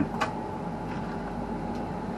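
Steady machine hum inside a tower crane cab, with a single short click about a quarter of a second in.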